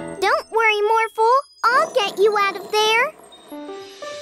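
A high-pitched cartoon character's voice making short gliding, wordless calls, over light children's music. Near the end the voice stops and a few soft tinkling notes are heard.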